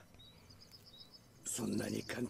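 Faint, rapid high-pitched chirping, a quick run of short chirps, as a field ambience in an animation soundtrack. A character's voice line starts about one and a half seconds in.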